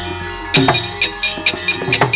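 Javanese gamelan accompanying a wayang kulit shadow-puppet play. A low gong hum fades in the first half second. Then, from about half a second in, a quick rhythmic clatter of sharp metallic strikes and drum strokes comes at about five a second.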